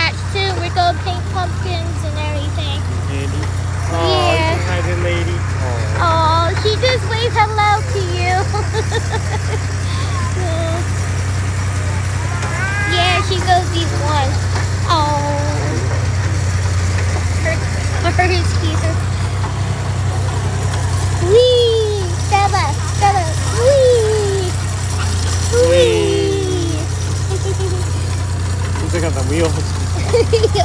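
Hayride tractor engine running with a steady low drone as it pulls the wagon, with people's voices and a child's voice over it.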